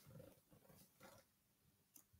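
Near silence: room tone, with a couple of very faint soft noises.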